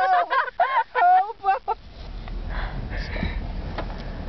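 A person laughing, high-pitched and in quick repeats, stopping about two seconds in; after that, the low steady rumble of the car's engine and road noise heard from inside the cabin.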